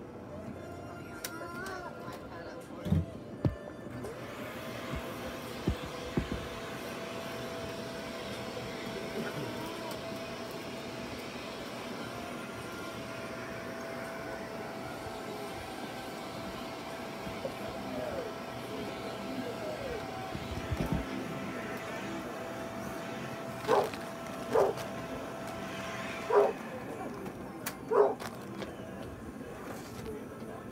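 Indistinct voices in a room over a steady hum, with four short, high-pitched cries in the last few seconds.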